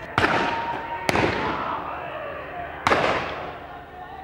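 Three cannon shots from the pirate ships: a sharp bang about a fifth of a second in, another about a second in and a third near three seconds. Each is followed by a long echoing decay.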